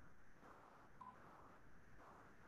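Near silence with faint background noise, and one brief, faint beep about a second in.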